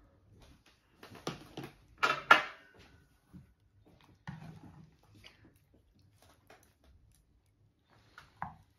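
Serving tongs and a ladle knocking against a ceramic plate and a cooking pot. A few light clicks come first, then two sharp clinks with a short ring about two seconds in, which are the loudest sounds. Softer knocks and scraping follow.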